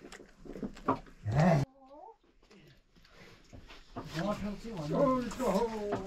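A short, loud, rough vocal sound about a second and a half in that cuts off abruptly, followed by a quieter stretch and then people talking near the end.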